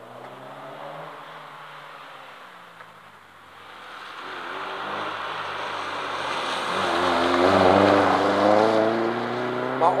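A Ford Escort Mk1 rally car's engine approaches at speed and passes close by. The engine note climbs steadily over the last few seconds as the driver accelerates, and is loudest as the car goes past.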